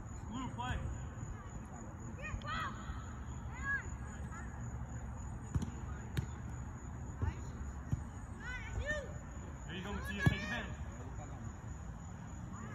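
Children's voices calling out in short shouts at a distance, with a few sharp thuds, the loudest about ten seconds in, over a steady low rumble and a faint steady high tone.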